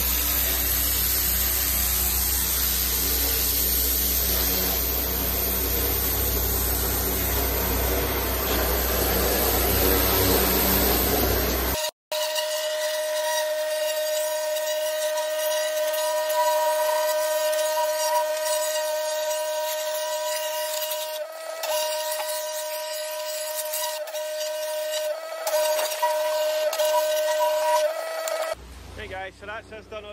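Petrol pressure washer at work: the high-pressure jet spraying onto paving slabs as a dense, even hiss with the engine and pump running underneath. About twelve seconds in it cuts abruptly to a steady, pitched machine whine that drops away near the end.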